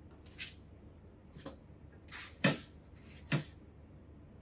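Kitchen handling sounds: a few short scrapes and rustles, then two sharp knocks about a second apart, as freshly baked buns are shifted from the hot baking tray onto a cooling rack.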